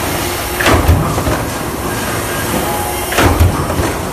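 Large mechanical stamping press running a multi-station die for sheet-metal drawing. It strikes twice, about two and a half seconds apart, each stroke a heavy low thud with a clatter, over steady machine noise.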